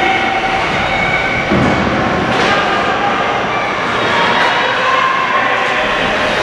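Steady, echoing ice-rink din: many overlapping voices from spectators and benches mixed with skates and sticks on the ice. A single sharp clack comes about two and a half seconds in.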